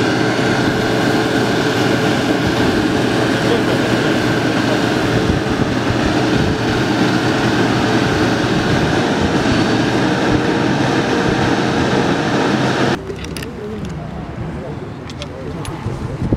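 Armoured police water-cannon truck running, its engine and water cannon making a steady, dense drone. The sound cuts off suddenly about thirteen seconds in, leaving a quieter background.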